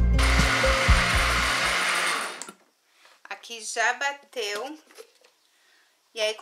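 Countertop blender running at medium speed through a thin liquid batter of egg, oil, carrot and sugar, then cutting off about two seconds in.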